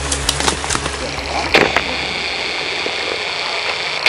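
Coyol palm fruits being knocked down and gathered: a few sharp knocks and clicks, the clearest about one and a half seconds in, over steady outdoor noise with a high, level buzz.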